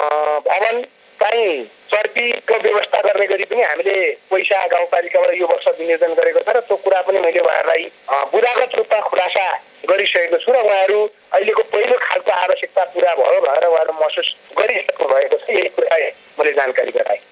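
Speech only: one voice talking steadily in Nepali, with short pauses, with the narrow, thin sound of a radio broadcast.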